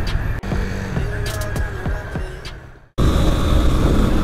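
Motorcycle engine running at low speed in city traffic, with the surrounding traffic noise, fading out towards the end. About three seconds in it cuts suddenly to a loud rumble of wind and engine from a motorcycle at road speed.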